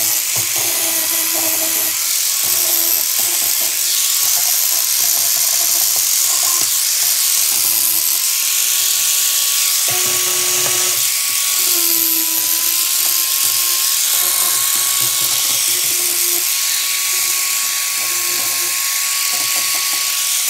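Electric angle grinder running continuously with a steady high motor whine, its disc grinding the welded steel parts of a scrap-metal sculpture. The whine sags briefly about halfway through.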